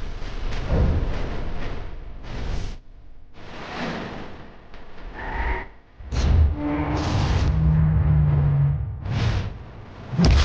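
Title-sequence theme music laced with whooshes and booming hits, the loudest hit about six seconds in, followed by a held low note.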